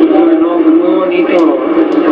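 A man talking in Spanish, his voice sounding thin and boxy.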